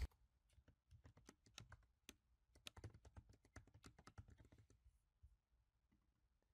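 Faint typing on a computer keyboard: a quick run of about twenty keystrokes, starting about a second in and stopping a little past four seconds.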